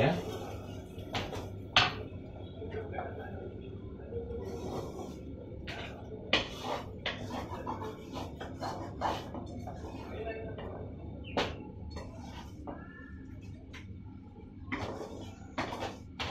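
Wooden spatula stirring scrambled eggs and onions in a non-stick frying pan, with irregular knocks and scrapes against the pan over a steady low hum.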